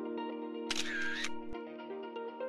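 A camera shutter click, about half a second long and about a second in, over instrumental background music.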